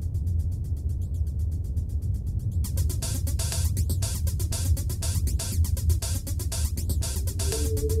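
Electronic groove from a Korg Electribe 2 sampler: a deep, steady bass under a fast, even ticking beat. About three seconds in, a brighter, noisy high layer opens up over it, and near the end held notes come in.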